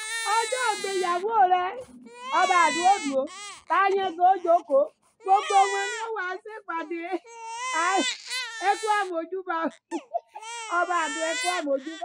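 Infant crying in repeated high-pitched wails about a second long, each rising and falling, with short breaks between them.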